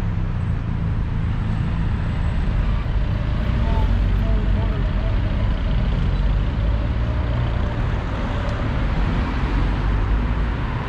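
Steady road traffic on a city boulevard: cars driving past in a continuous low rumble.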